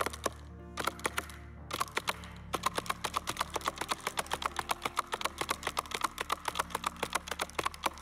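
Hands drumming rapidly on a lectern in a galloping rhythm, imitating the hoofbeats of Pharaoh's chariots coming on. It begins with a few scattered knocks and settles into a fast, even run of about seven a second.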